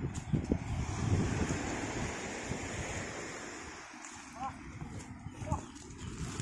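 Wind buffeting the microphone over a steady wash of surf, loudest in the first seconds and easing off. Two brief rising cries come in the last two seconds.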